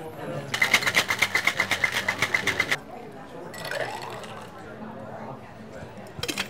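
Ice rattling in a metal cocktail shaker shaken hard, a fast even rattle of about ten strokes a second for a little over two seconds, then a shorter burst of shaking about three and a half seconds in.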